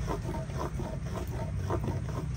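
A small block of wood rubbed rapidly back and forth against a wooden log, a quick rough scraping of about six or seven strokes a second.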